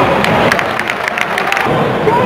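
Spectators in a football stadium clapping: a quick, uneven run of handclaps from several people that stops about a second and a half in, over a murmur of crowd voices.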